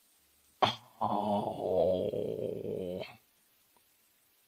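A short sharp sound, then a long wavering moan-like vocal sound lasting about two seconds that stops abruptly.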